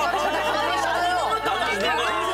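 Several people talking over one another at once, with a low steady hum underneath.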